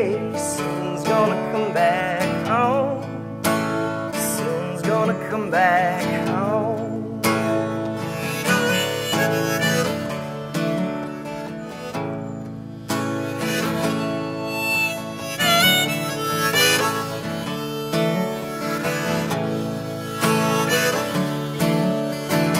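Harmonica solo, played from a neck rack, over a strummed acoustic guitar.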